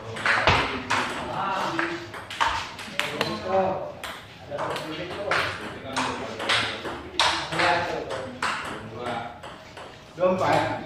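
Ping-pong ball striking paddles and the table in an irregular series of sharp clicks.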